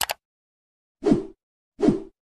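Animation sound effects for a subscribe end card: a quick double mouse-click, then two short popping whooshes with a falling pitch, about a second and just under two seconds in.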